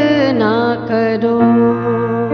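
A woman singing a song, holding a wavering note that slides down about half a second in and settles on a new note, over steady instrumental accompaniment.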